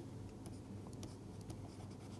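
Faint taps and scratches of a stylus writing on a tablet screen, a few light ticks over quiet room tone.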